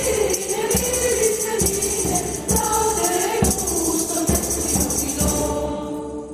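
Mixed choir singing, with hand percussion with jingles keeping a steady beat a little under once a second. The beat stops near the end as the voices hold long notes and fade.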